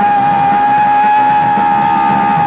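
Live punk rock band playing loudly, with one long, steady high note held over the guitars and drums.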